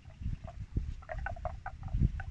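Many short chirp-like animal calls in quick, irregular succession, over uneven low thumps.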